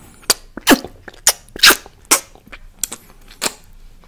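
Close-miked wet mouth sounds: lips smacking and fingers being sucked at the mouth, about seven sharp pops spaced irregularly, two of them much louder than the rest.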